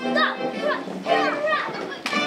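A roomful of young children's voices singing and calling out together along with music, their pitches sliding up and down.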